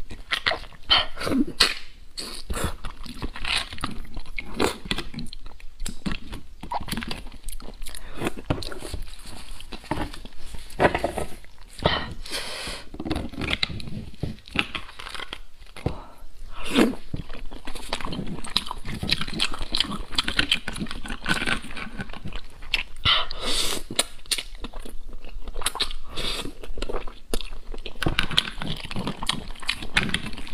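Close-miked eating of spicy beef bone marrow: wet chewing and mouth sounds, with a metal spoon scraping and clicking inside the split bone. A dense, unbroken run of short clicks and smacks.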